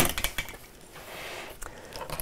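Fabric strips being handled and moved about on a wooden tabletop: a knock at the start, a few light taps, then a faint soft rustle of cloth.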